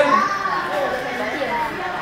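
Children's voices chattering and talking over each other in a group.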